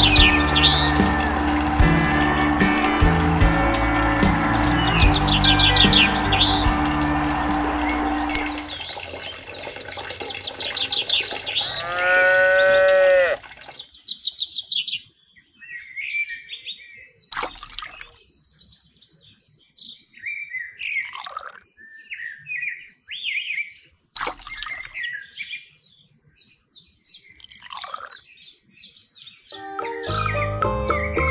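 Background music with high bird chirps over it for the first nine seconds or so. Then a loud pitched call that wavers up and down about twelve seconds in, and after it birdsong chirps alone, repeated calls with gaps between them.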